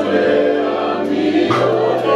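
Gospel choir music: several voices holding sung chords over a steady bass line, with the bass note shifting about one and a half seconds in.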